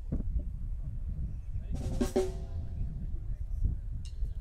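A live band starting up: scattered drum-kit hits, then a cymbal crash over a held chord about two seconds in, and another drum hit near the end.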